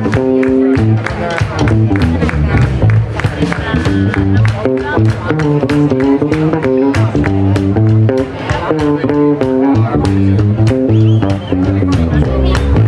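Live blues band playing: electric guitars, bass guitar and drums, with a steady drumbeat under the guitar lines.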